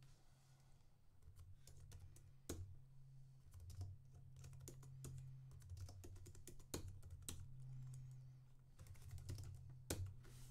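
Faint typing on a computer keyboard: irregular key clicks, some louder than others, over a low steady hum.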